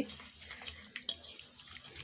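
A hand squishing and stirring a wet mixture of egg, oil and sugar in a glass bowl: faint liquid sloshing and squelching, with a few small clicks.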